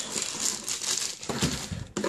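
Crinkling plastic bag and rustling cardboard as a boxed radio in its plastic wrap is handled in the box, a continuous run of fine crackles.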